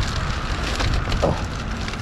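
Wind rumbling on the microphone, mixed with the crackly rustling of plastic and insulated food bags being handled.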